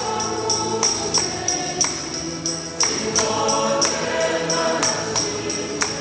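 Choir singing gospel music over a steady tambourine beat, about two strokes a second.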